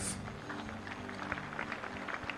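Soft background music from the live band: quiet held chords sustained steadily, with faint scattered hall noise.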